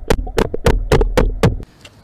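A rubber mallet knocking on a screwdriver wedged in a pool return jet's eyeball retaining ring: a quick, regular series of about six taps, three to four a second, that stops about a second and a half in. The blows drive the ring counterclockwise to loosen the eyeball fitting from the return.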